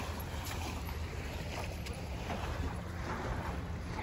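A steady low outdoor rumble with a faint hiss above it, and a few faint ticks.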